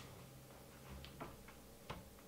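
Faint, irregular clicks of a one-handed bar clamp's trigger being worked as it is tightened: four clicks, the last the loudest, near the end.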